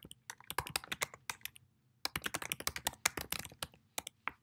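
Computer keyboard being typed on quickly, two runs of rapid key clicks with a short pause of about half a second between them.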